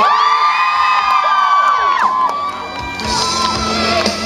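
A male singer holds one long high note over a backing track, ending about two and a half seconds in, after which the crowd cheers and screams over the music.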